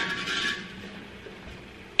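A clink of kitchen dishes ringing out and fading over about a second, then faint, steady kitchen background.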